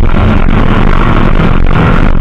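A 4x2 safari race car's engine running hard under load, very loud, with the pitch shifting as the revs change and the car clattering over rough ground.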